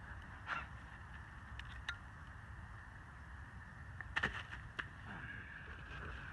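Quiet outdoor background with a few faint, short scrapes and clicks: one about half a second in, one near two seconds, and a pair around four seconds.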